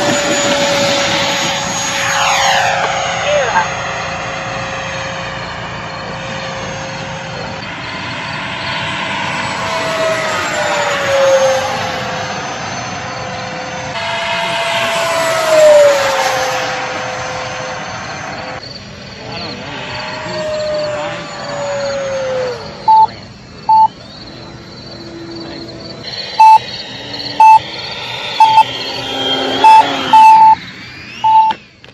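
RC F-22 model jet's motor whining through several fast passes, its pitch swooping and falling as it goes by. The whine fades after about twenty seconds as the jet comes down, and a series of short electronic beeps follows.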